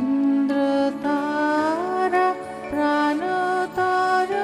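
A woman singing slow, sustained notes that glide from one pitch to the next, accompanied by a harmonium holding a steady drone, with light tabla strokes.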